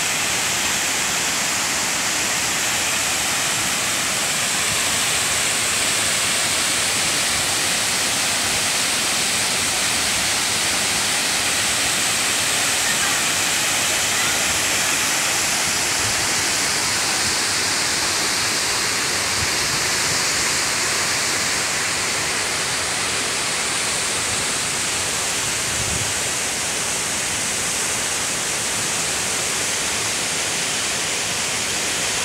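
Waterfall of several streams dropping over a rock cliff into a plunge pool: a steady, even rush of falling water.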